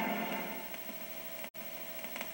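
Hiss of a weak, off-air analogue TV signal, with a faint steady tone underneath, fading down over the first second. A split-second dropout about one and a half seconds in, where one recording is cut to the next.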